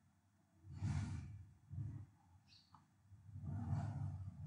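A person breathing out onto a close microphone, three times: about a second in, just before two seconds, and a longer breath near the end.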